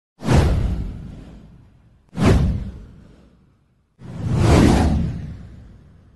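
Three whoosh sound effects for an animated title card, about two seconds apart. Each swells up quickly and fades away over about a second and a half. The third builds up more slowly than the first two.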